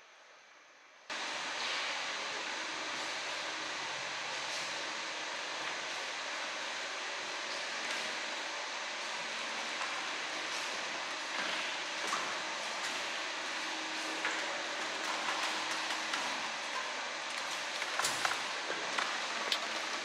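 Steady rushing noise with a faint low hum starts abruptly about a second in and holds evenly; a few light clicks and knocks come near the end.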